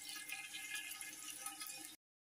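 Faint, steady crackling and bubbling of onions, tomatoes and chillies simmering in a little water in a lidded nonstick pan. The sound cuts off suddenly at the end.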